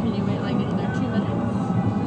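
Steady low rumble of a moving car heard inside the cabin, with passengers' voices over it.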